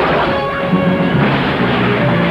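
Music over the crash of cars smashing through wooden boards.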